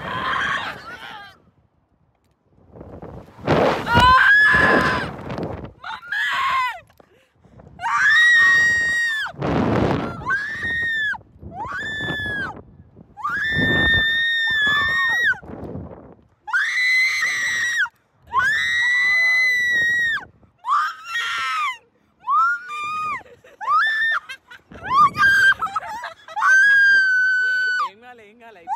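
Riders on a slingshot thrill ride screaming in terror, a long run of drawn-out, high-pitched screams one after another, broken by a few brief rushes of noise as the capsule is flung through the air.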